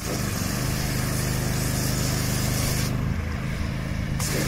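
Fire engine's diesel engine running steadily, with a steady hiss over it that thins out about three seconds in.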